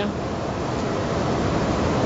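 Steady hiss of a hardwood-fired grill, fig wood and mesquite, with chorizo sausage sizzling on it.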